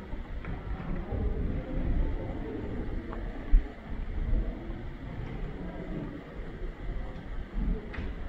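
Low, uneven rumble of a handheld camera being walked through a quiet museum gallery, with one sharp thump about three and a half seconds in.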